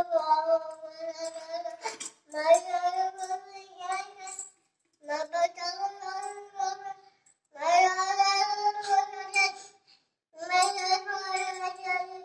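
A young child's voice singing in long, drawn-out notes: five phrases of about two seconds each, separated by short breaths.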